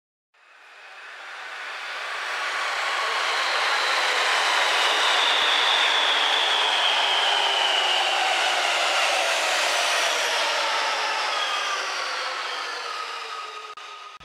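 Electric commuter train moving through an underground station: a steady rush of running noise that swells over the first few seconds and eases off near the end, with a high whine that slowly falls in pitch.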